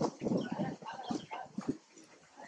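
A string of short animal calls and noises, loudest at the start and fading toward the end.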